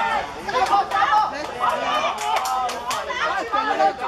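Sideline spectators chattering, several voices talking at once, with a few short sharp clicks about halfway through.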